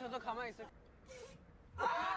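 Voices from a playing video clip: lively speech for the first half second, then a short pause broken by a brief hiss. Near the end comes a sudden loud burst of several voices calling out at once.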